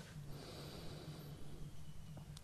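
A man's faint breath, drawn slowly through the nose, over a steady low hum.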